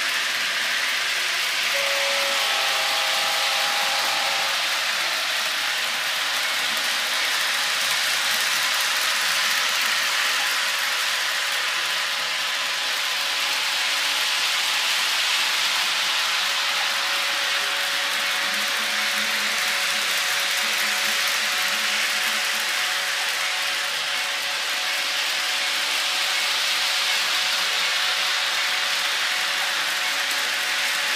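Two small electric train-set engines pulling a long string of cars along the track: a steady mechanical running noise with a faint steady whine.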